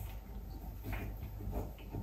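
Pen writing on paper on a clipboard: a few soft, short scratches, the clearest about a second in.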